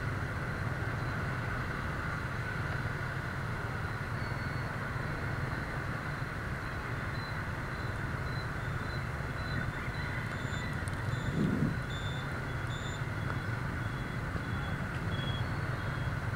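Steady hum of dense motorbike traffic heard from a moving motorbike: engines and road noise. Faint short high beeps repeat for several seconds from about four seconds in, and a brief louder sound comes near the end.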